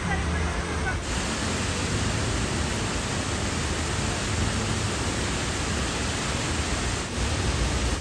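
Large public fountain: water jets falling into the basin and a cascade spilling over its rim, a steady rushing splash.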